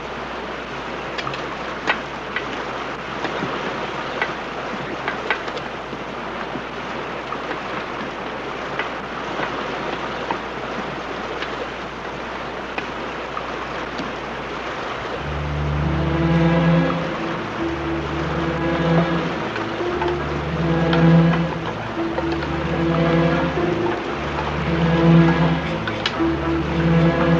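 A steady rushing noise with a few faint clicks. About halfway through, a dramatic film score comes in with a slow, pulsing low figure that repeats about every two seconds.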